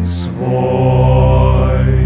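Slow hymn music between sung lines: a low chord held steadily by layered voices, entering about half a second in after a short breathy hiss.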